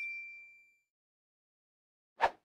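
Bell 'ding' sound effect of a subscribe-button animation: one high, clear ring that fades away within the first second.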